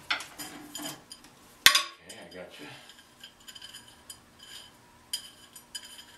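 Metal parts of an armature stand being handled and fitted together: a sharp metallic click about 1.7 s in, then scattered light clinks and taps.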